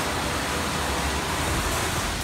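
Steady roar of ambient noise beside a shuttle bus, with a low rumble underneath.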